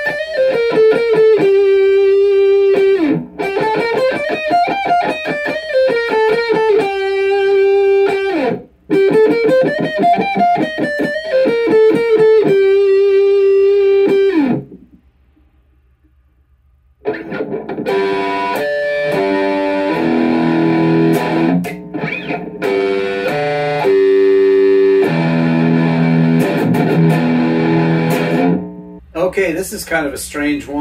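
Electric guitar, an orange Fender Mustang played through a Fender Mustang GT amp: a melodic riff that climbs and falls, played twice, ending on a held note. After a pause of about two seconds in the middle, a fuller passage of chords follows.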